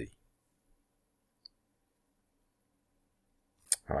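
Near silence with a faint steady hum, broken by a tiny tick about a second and a half in and one sharp click shortly before speech resumes near the end. The tail of a spoken word is heard at the very start.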